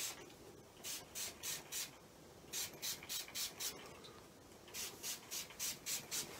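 Hand-pump plastic spray bottle misting water onto a wet watercolour wash: quick hissing squirts, about four a second, in three runs of four or five.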